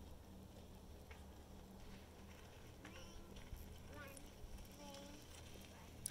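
Near silence: faint outdoor ambience, with a few soft, distant voice-like calls about halfway through and near the end.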